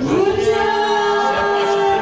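A group of voices, a woman and two men, singing together into microphones, holding one long note.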